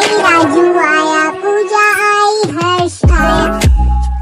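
Hindi nursery-rhyme song: a child-like singing voice carries the melody over backing music. About three seconds in, a heavy bass beat with regular drum hits comes in under the singing.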